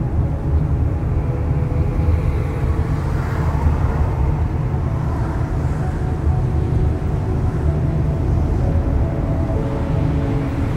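Steady road and engine noise of a car driving on a city street, heard from inside the cabin: a continuous deep rumble with tyre noise.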